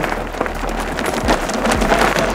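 Mountain bike tyres rolling over loose gravel: a continuous crackling crunch with scattered sharp clicks of stones.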